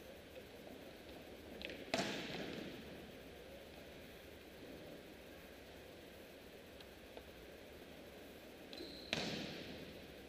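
Two hard hand-on-volleyball smacks of attack hits, about seven seconds apart, each echoing for a second through a large arena. A short high squeak comes just before the second.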